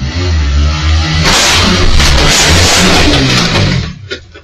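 Motorcycle engine revving hard and loud, growing noisier about a second in, then cutting off abruptly at the end.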